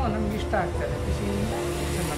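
A woman speaking in an interview answer, not in English, with soft background music running under her voice.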